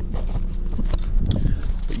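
Handling noise as a camera is taken off its tripod and moved by hand: a run of short knocks, clicks and rubbing. A steady low rumble of the car cabin underneath.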